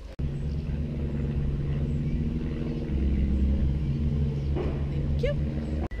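A steady low hum over a deep rumble, cutting off abruptly near the end.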